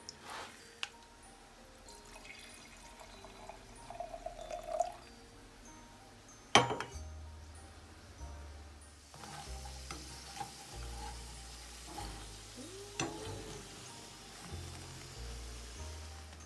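Red wine poured into a stemmed glass, followed by a single sharp knock, the loudest sound. From about nine seconds in, plantain slices sizzle as they fry in hot oil, over background music with a steady bass.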